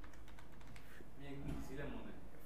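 Computer keyboard typing: a run of soft key clicks as a short word is typed.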